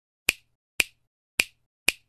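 Four sharp finger snaps, evenly spaced about half a second apart, used as a sound effect for an animated title.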